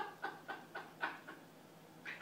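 A man laughing hysterically in quick bursts, about four a second, trailing off after a little over a second.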